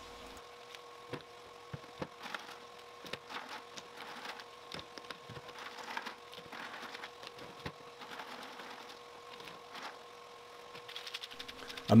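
Pieces of lava rock clicking and knocking against each other as they are dropped by hand into a mesh bag in a plastic bucket, a few light knocks a second at irregular spacing. A faint steady hum runs underneath.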